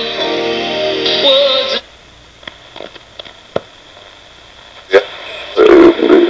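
1949 Kosmaj 49-11 four-valve superheterodyne radio playing music with singing through its speaker. The music cuts off abruptly about two seconds in, and a few short clicks follow as the knobs are worked. Near the end a loud broadcast voice comes in.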